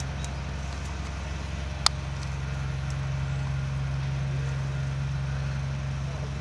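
A motor running with a steady low hum, and one sharp click about two seconds in.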